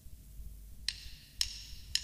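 Drumsticks clicked together in a steady count-in before a take: three sharp, ringing clicks about half a second apart, starting about a second in.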